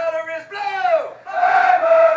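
A group of male voices shouting long, drawn-out yells. One yell falls in pitch just before halfway through, then many voices join in together.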